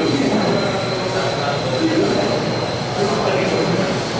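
Indistinct background voices over a steady noise, with a thin steady high whine running underneath.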